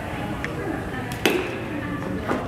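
Background noise of a busy room with a faint click about half a second in and a sharp knock a little over a second in.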